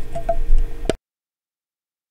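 A few light ticks and clicks of a hobby knife blade working a tiny plastic part, over a low rumble; the sound cuts off suddenly to complete silence about a second in.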